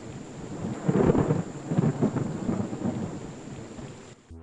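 Rolling thunder over a steady hiss of rain, swelling about a second in with several rumbling surges, then fading.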